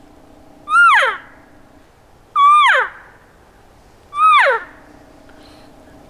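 Three cow elk mews blown on a diaphragm mouth call, about a second and a half apart. Each is a short, high note that rises briefly and then drops away, made with the jaw dropped to hold a consistent tone.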